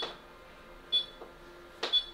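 Exilis radio-frequency skin-tightening machine giving short high beeps about once a second while it runs a treatment, over a faint steady hum.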